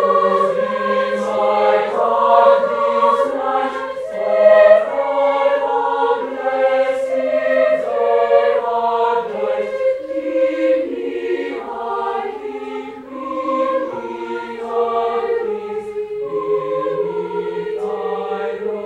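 Boys' choir singing slow, sustained chords in several voice parts, the notes changing about once a second.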